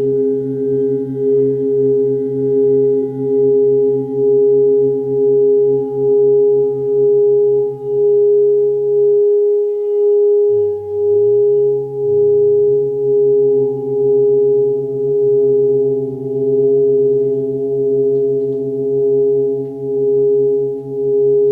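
Sound-therapy drone of several sustained ringing tones, one clear mid-pitched tone loudest, swelling and fading about once a second. The lower tones drop away for a moment about halfway through, then return.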